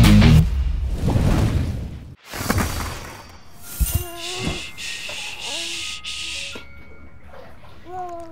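A loud rock music sting cuts off half a second in. Then comes a soda commercial's sound: a sharp crack, a high fizzing hiss, and a baby's short babbling cries.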